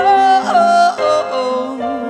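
A woman singing a few long held notes with no clear words over steady sustained keyboard chords.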